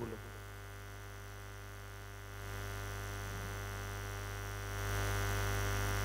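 Steady electrical mains hum and buzz picked up through the microphone and sound system, with the background hiss stepping up louder about two and a half seconds in and again near five seconds.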